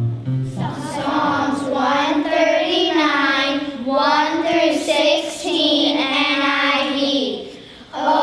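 A group of young children singing a song together in unison, with notes held and gliding between pitches, and a brief pause just before the end.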